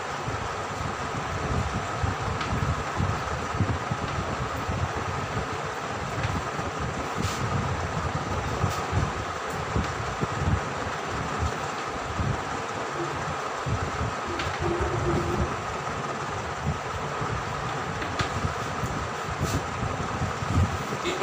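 Chalk writing on a blackboard, with a few faint taps and scrapes, over a steady background noise with an uneven low rumble.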